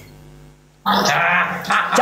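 A man's loud, shouted vocal outburst breaks in suddenly about a second in.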